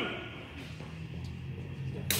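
Quiet background of a large indoor hall: a steady low hum with faint noise, and a few faint taps.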